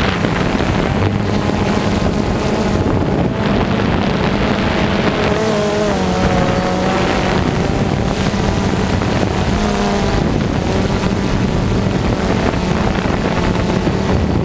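DJI Phantom 2 quadcopter's electric motors and propellers running, recorded by the camera on board: a loud, steady drone of motor hum with wind noise on the microphone. The motor pitch wavers as the speed changes, most clearly around the middle.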